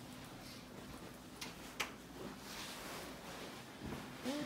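Quiet room with light rustling from a handheld camera on the move, and two short clicks about a second and a half in, the second sharper.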